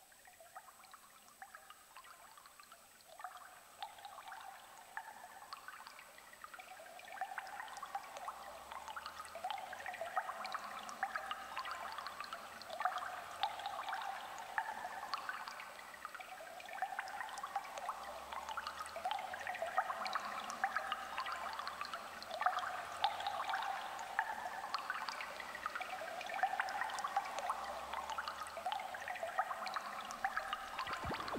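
A Berlin School-style synthesizer sequence: a fast, repeating pattern of short notes fades in from near silence and grows steadily louder. A low, pulsing bass line comes in about eight seconds in.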